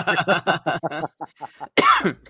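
A man's voice trailing off, then one short, loud cough near the end.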